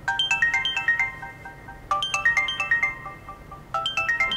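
Mobile phone ringtone: a short melody of quick high notes, repeated three times about two seconds apart.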